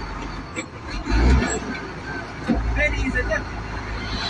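Low steady rumble inside a truck cab, with two heavier low thuds, one about a second in and another about two and a half seconds in.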